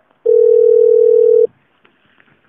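One steady telephone-line beep lasting a little over a second, heard over a recorded phone call as the automated menu moves on to transferring the call.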